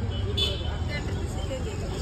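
Street ambience: a steady low rumble of road traffic with faint voices of people close by, and a short higher-pitched sound about half a second in.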